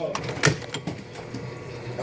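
Cutaway M2 .50-cal machine gun cycling its action, with a sharp metallic clack about half a second in and a few lighter clicks over a steady hum. The bolt fails to grab the dummy round on this cycle.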